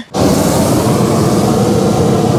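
Hot-air balloon gas burner firing: a loud, steady blast that starts abruptly and holds, heating the air in the envelope.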